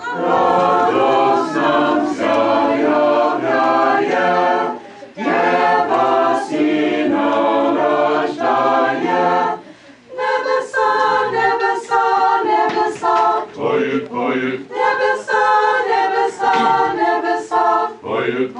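Small choir singing an Orthodox Christmas carol a cappella, in sustained chorded phrases with short breaks for breath about five and ten seconds in.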